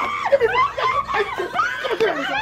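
Several people's voices crying out over one another in short, broken, pitch-swinging cries, without clear words, during a physical scuffle.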